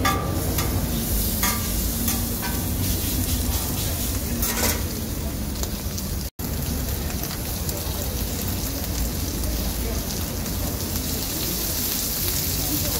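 Chopped beef gopchang sizzling on a flat iron griddle in a steady hiss, with a metal spatula scraping and clicking against the steel plate a few times in the first half. A split-second dropout about six seconds in breaks the sound, then the sizzling carries on.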